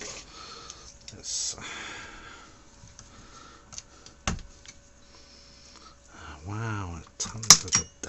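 Handling noise of fingers working at a hot-glued ribbon-cable connector and circuit board inside a metal equipment chassis: scattered small clicks and scrapes, with a sharp click about four seconds in and the loudest near the end.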